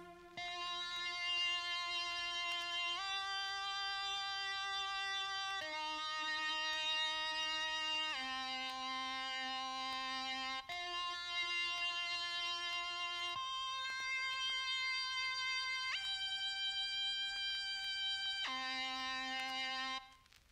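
A software synthesizer lead playing a slow solo melody of eight sustained notes, each held about two and a half seconds. The line rises and falls, climbs to its highest note near the end, then drops to a low final note.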